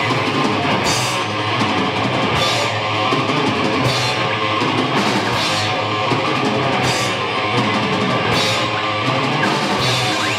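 Punk band playing live, with distorted electric guitars, bass guitar and a drum kit driving a fast, loud rock song. Cymbal crashes land every second or two.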